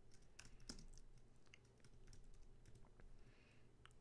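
Someone typing on a computer keyboard: faint key clicks at an uneven pace.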